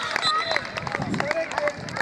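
Young players and spectators shouting and cheering just after a goal in a youth football match, several voices overlapping, with scattered sharp taps.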